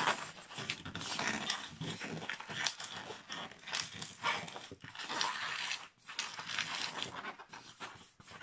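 Inflated latex modelling balloon squeaking and rubbing under the fingers as it is twisted and squeezed into bubbles, in short irregular squeaks.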